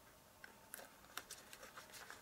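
Faint handling of card stock by hand: a handful of light ticks and taps as the paper pieces are pressed and shifted, mostly in the second half.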